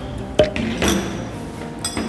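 A few sharp clinks of metal spoons against small ceramic bowls, the loudest about half a second in, over light background music.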